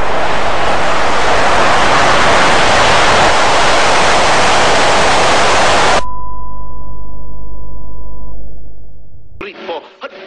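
Loud television static hiss for about six seconds. It cuts off suddenly into a steady, high-pitched colour-bar test tone over a low hum, which fades away. Cartoon dialogue and music come back in near the end.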